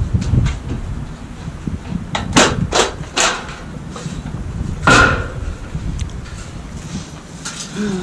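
Light-gauge metal framing studs clanking as they are handled and set down on the ground: several sharp metallic knocks about two to three seconds in, and a louder one about five seconds in.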